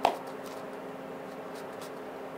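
Quiet room tone with a faint steady hum, and a brief click at the very start.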